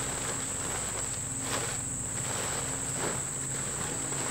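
Steady high-pitched insect chorus, with a few soft crinkles of a plastic tarp being unfolded and shaken out.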